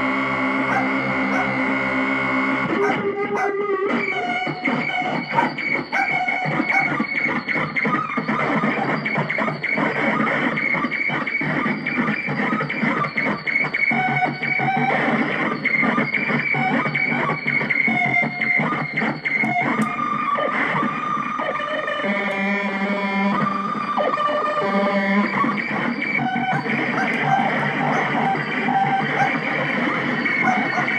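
Circuit-bent Casio SK-1 sampling keyboard being played in a noisy improvisation. Held tones in the first few seconds break into a dense, glitchy stutter of rapid clicks and shifting pitches, and steadier held tones return for a few seconds about two-thirds of the way through.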